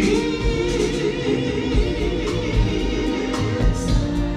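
Male soul vocal group singing live with a backing band of drums, bass guitar, keyboard and horns. A sung note held with a wavering vibrato in the first second or so, over a steady drum beat.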